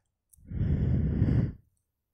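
A person's sigh: one breathy exhale lasting a little over a second.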